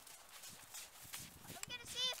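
Footsteps crunching in snow, a run of short sharp steps. In the last half-second a child's high voice calls out.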